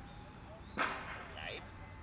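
A sharp swoosh about a second in as a ball-launcher stick is swung to throw the ball, followed by a brief falling vocal sound.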